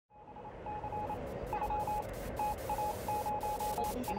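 Static hiss fading in, with a run of short beeps at one steady pitch that switch on and off in an irregular pattern.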